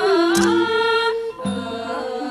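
Thai classical ensemble music accompanying a dance: sustained melodic notes with a wavering, ornamented line in the first second, and a single bright metallic stroke about half a second in.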